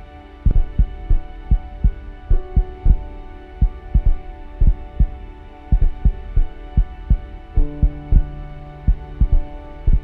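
Heartbeat sound effect: deep double thumps repeating steadily over a sustained low drone, whose pitch shifts about three-quarters of the way through.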